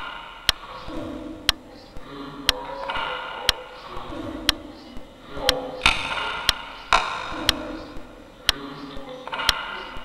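Clock ticking steadily, one sharp tick each second, over a garbled, wordless voice-like sound.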